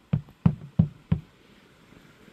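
Four short, dull knocks, about three a second, in the first half.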